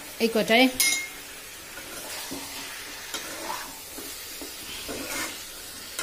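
Chicken curry sizzling as it fries in a karahi, with a sharp metal clink about a second in and stirring sounds through the rest.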